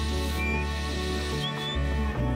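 Shepherd's mouth whistle giving two short, high whistle commands to a herding dog, the second rising in pitch, over background music.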